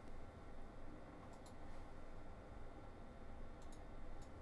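A few faint computer mouse clicks, in two small pairs, over quiet room noise.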